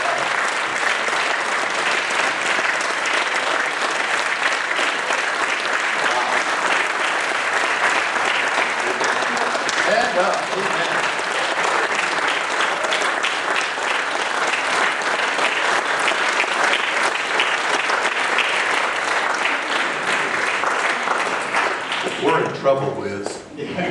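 A church congregation applauding, a dense, steady clapping of many hands held up throughout.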